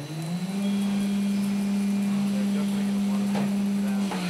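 A CNC milling machine's end mill cutting aluminium under coolant, giving a steady low hum whose pitch climbs over the first half second as the cut settles in, then holds.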